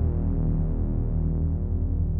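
Analog-synthesizer score music: a dense, low drone of stacked tones with a rapid pulsing texture, held steady.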